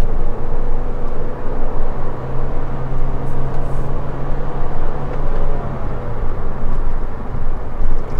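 Kia Cerato's 1.6-litre naturally aspirated Gamma MPI four-cylinder engine under full throttle, heard from inside the cabin: a steady engine drone over road and tyre noise. The drone eases off about two-thirds of the way through.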